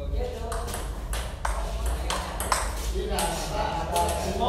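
Table tennis ball striking paddles and the table: a string of sharp clicks a fraction of a second apart.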